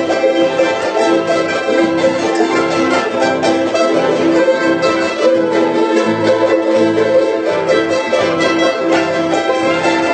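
A large ensemble of charangos with one acoustic guitar, thirteen charangos in all, strumming and playing a huayno together in a dense, continuous mass of small bright strings.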